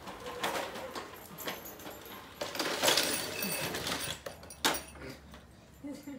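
Plastic baby push walker rolling across a tile floor, its wheels and toy parts rattling, with a few sharp knocks. It is loudest in the middle and settles down near the end.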